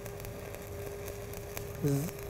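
Stick-welding (SMAW) arc burning on steel pipe while a cap bead is run toward a tie-in: a faint, steady hiss with a few light crackles and a steady hum underneath. A short vocal sound comes in near the end.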